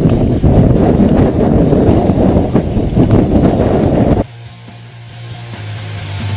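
Mountain bike rattling and jolting over a cobbled track, with wind buffeting the microphone. About four seconds in this cuts off abruptly and rock music takes over, starting quietly and building.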